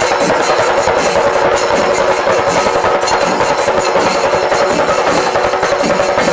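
A chenda melam ensemble: many chenda drums beaten with sticks in a fast, continuous roll, loud and steady. Over the drums, kombu horns and a kuzhal pipe hold a steady, wavering tone.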